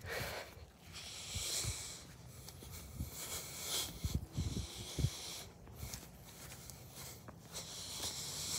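A person breathing close to a phone's microphone while walking, soft breaths every couple of seconds, with a few low knocks of the phone being handled about halfway through.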